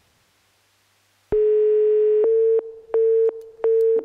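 Telephone line tone played over the studio sound: one steady tone for about a second, then short, even beeps less than a second apart, a busy signal showing the call is not getting through.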